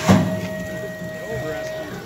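BMX starting gate's start signal: a sudden clank right at the start, then one steady beep held for most of two seconds, the long final tone that goes with the gate dropping.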